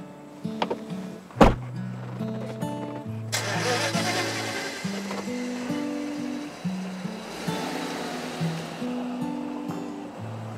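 Soft background music with a single solid thump of a car door shutting about a second and a half in. From about three seconds in, a sedan pulls away, its engine and tyre noise swelling for several seconds under the music and then fading.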